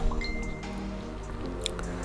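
Soft background music with sustained held notes that shift to new pitches about halfway through.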